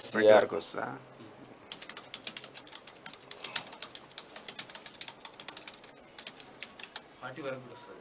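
Computer keyboard typing: a fast, uneven run of light key clicks lasting several seconds. A short burst of voice opens it and a brief voice comes near the end.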